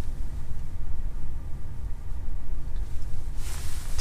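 Steady low rumble of background noise inside a parked car's cabin, with no distinct events.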